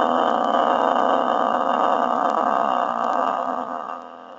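A woman with Parkinson disease, before voice treatment, holds the vowel 'ah' on one deep breath for as long as she can. The voice is steady but rough and noisy, with no clear, clean pitch, and it fades out near the end as her breath runs out.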